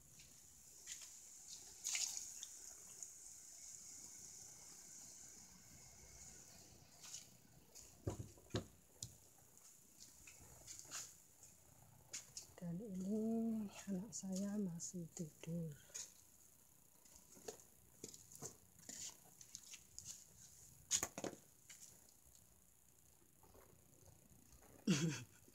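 Faint, scattered light clicks and knocks of things being handled, with a person's voice briefly about halfway through.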